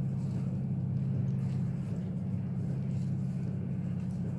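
ZREMB passenger lift car travelling in its shaft: a steady low hum from the drive and the moving car, unchanged throughout.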